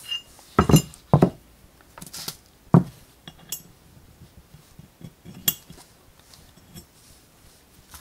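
Machined aluminium parts clinking and knocking against each other as they are handled and fitted together by hand, trying the fit of tight alignment holes. A handful of sharp knocks come in the first three seconds, then lighter ticks, with one more clink about five and a half seconds in.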